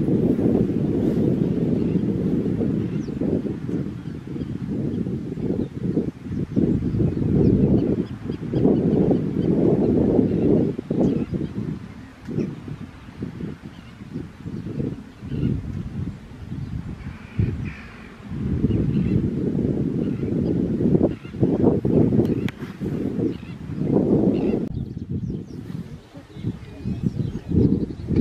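Gusty wind buffeting the microphone: an uneven low rumble that swells and drops every few seconds. Faint bird calls come through above it now and then.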